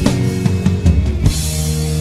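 Instrumental karaoke backing track of a Mandarin pop song, with no lead vocal: sustained band chords over a drum kit, with a run of quick drum hits in the first half.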